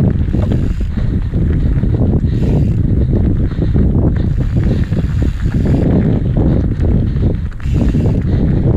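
Mountain bike rolling fast down a dirt trail. Heavy wind noise on the microphone mixes with tyre rumble and frequent rattling knocks over bumps and roots.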